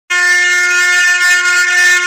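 A loud, steady horn-like tone held at one pitch, rich in overtones.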